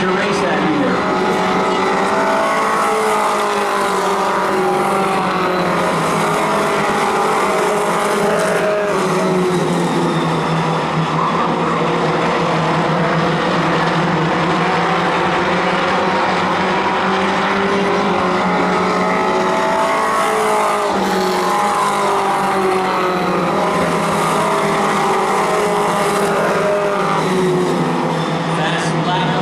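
Several four-cylinder pro-stock race cars running laps, their engines overlapping and rising and falling in pitch as they accelerate, lift and pass.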